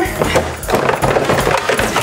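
Plastic toy track pieces and cardboard packaging knocking and rattling as they are lifted out of the box and handled.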